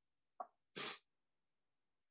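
A short mouth click, then a quick sharp breath, brief and hissy, about a second in.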